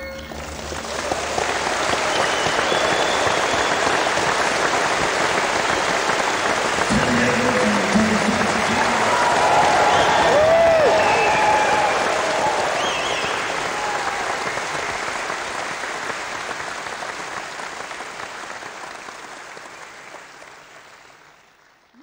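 Concert audience applauding and cheering as the last notes of a song die away. The applause fades out gradually over the second half.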